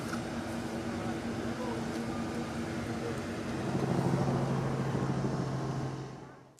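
A running engine's steady hum over outdoor background noise. About three and a half seconds in, a louder, lower-pitched hum comes in.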